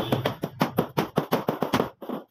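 Hammer striking a nail through corrugated metal sheeting into a wooden frame, a quick, even run of about seven sharp blows a second.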